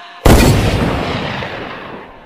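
A single loud boom like a gunshot or blast, a sound effect closing a bass-boosted song. It hits about a quarter of a second in, heavy in the deep bass, and dies away over the next two seconds.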